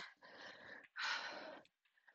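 A woman breathing hard from exercise: two heavy breaths in a row, each about half a second long, the second louder.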